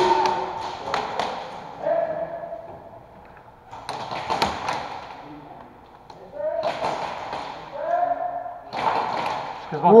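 Indistinct voices in a large, echoing room, broken by a few sharp taps and thuds, the sharpest a little over four seconds in.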